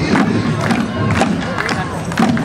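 Parade music with a steady percussive beat of about two strikes a second, over the noise of a crowd.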